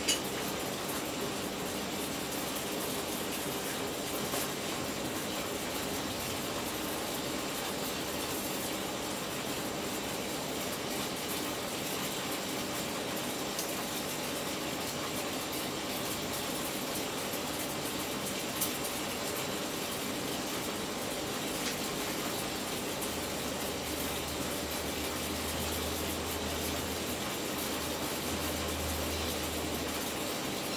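High-voltage arcs crackling and hissing steadily inside a plasma display panel, fed about 2 kV from a stack of two microwave oven transformers. A low hum joins about three-quarters of the way through.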